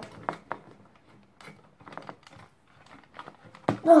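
Scattered light clicks and taps of hands working at the parts of a partly dismantled DVD player.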